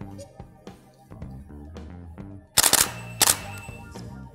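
Canon 70D DSLR shutter and mirror firing twice, a little over half a second apart, over background music with a steady beat.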